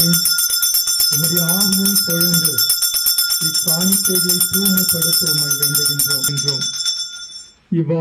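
Altar bells shaken in a rapid, continuous jingling ring that stops about six and a half seconds in, with a man's voice praying over them. In the Mass this ringing marks the moment the priest holds his hands over the bread and wine (the epiclesis).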